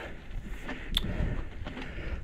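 Mountain bike being ridden up a dirt trail: a low rumble of tyre and riding noise, with one sharp click about a second in.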